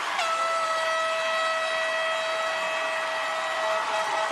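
Handheld air horn blown in one long, steady blast of about three and a half seconds, over audience noise.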